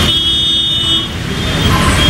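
Road traffic: a steady low rumble of vehicle engines, dipping briefly just after a second in.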